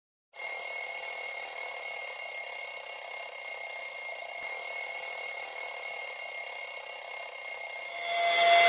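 Alarm clock ringing, starting abruptly about a third of a second in and then ringing steadily and loudly without a break.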